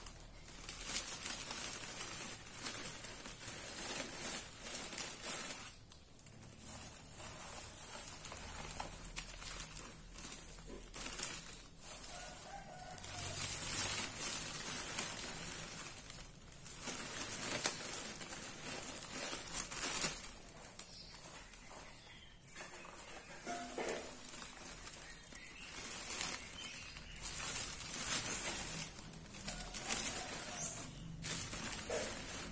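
Dry alang-alang (cogon grass) rustling and a clear plastic bag crinkling as handfuls of the grass are stuffed into it, in irregular bouts of handling.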